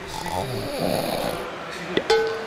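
A single drawn-out snore, breathy with a low rumble, that fades after about a second and a half.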